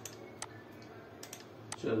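A few sharp computer mouse clicks, about five spread over two seconds, two of them in quick succession just past a second in.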